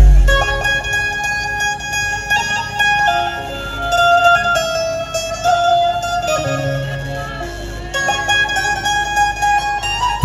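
Dhumal band's amplified Indian banjo (bulbul tarang) playing a solo melody of held and moving notes over a sustained bass note, with the big drums silent.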